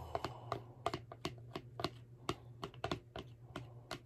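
Quiet, rapid, irregular light clicks and taps of utensils against a dish, about four or five a second, as shredded chicken is moved back, over a faint steady low hum.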